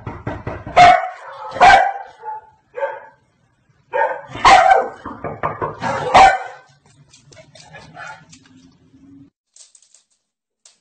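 A Komondor, the shaggy corded-coat dog, barking loudly several times in two bunches over the first six or seven seconds, followed by fainter sounds.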